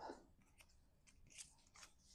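Near silence with a few faint rustles and ticks of cardstock pieces being picked up and handled.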